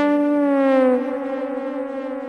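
Electronic psytrance music: a sustained synthesizer tone slides slowly down in pitch over about a second, then holds steady, slightly quieter, with no beat under it.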